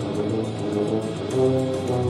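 French horn and tuba playing held notes together, the tuba low underneath and the horn above, swelling louder about a second and a half in.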